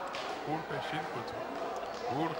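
Speech: people praying aloud.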